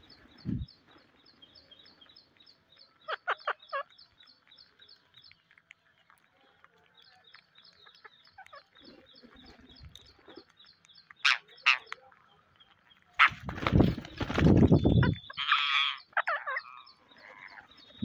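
Rose-ringed parakeets feeding: short shrill calls now and then, and near the end a long, loud, close fluttering of wings as birds take off and land beside the camera. A fast, even ticking runs underneath through much of it.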